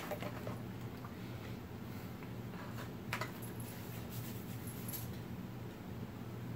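A person quietly chewing a chicken nugget, with a few faint clicks over a low, steady room hum.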